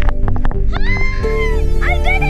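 A woman's high, excited shrieks on a bungee jump: a rising cry about two-thirds of a second in and another near the end. Steady background music plays under them throughout.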